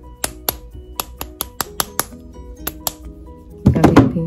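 Quick light taps of a mallet on a wire ring sitting on a steel ring mandrel, about four or five a second, flattening the wire so it takes a round shape. There is a louder burst of handling near the end, and background music plays throughout.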